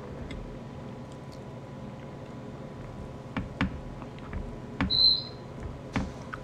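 Quiet room with a steady hum, broken by a few soft clicks in the second half and one short high-pitched beep about five seconds in.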